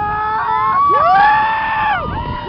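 Several roller coaster riders screaming together: short cries at first, then a long, high scream that swells up just before a second in and is held for about a second, over a low rush of wind.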